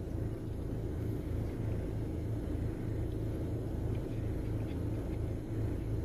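A vehicle engine idling: a steady low rumble with no change in speed.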